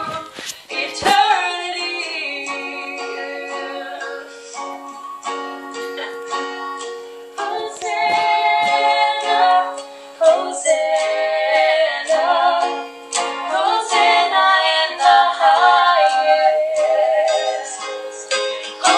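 Two young women singing together to a strummed acoustic guitar, heard over a video call.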